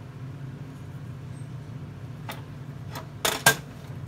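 Spoon knocking and scraping against the side of a stainless steel pot while stirring hot candy syrup: a few light clicks, then two sharp knocks a little after three seconds, the loudest of them. A steady low hum runs underneath.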